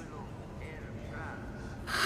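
Quiet low background hum, then a short, breathy intake of breath just before the end.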